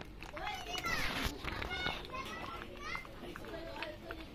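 Children's voices: overlapping chatter and high calls, with a louder shout a little after one second.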